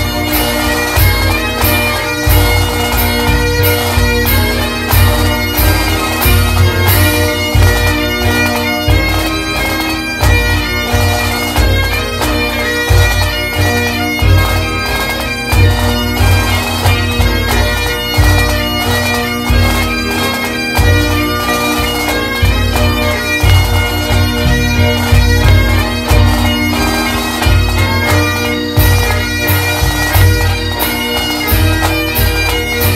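Highland bagpipes playing a tune over their steady drones, with a regular bass drum beat underneath, as in a pipe band recording.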